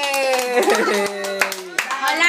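A group of small children clapping their hands, quick irregular claps, under a long drawn-out excited shout from an adult that ends about half a second in.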